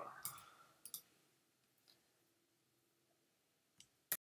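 A few faint, short computer clicks in the first second, with another faint one near the end; otherwise near silence.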